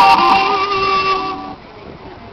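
Electric guitar: a loud note held ringing with a slightly wavering pitch, dying away about a second and a half in.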